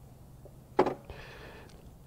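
A single short, sharp click a little under a second in, followed by a faint hiss.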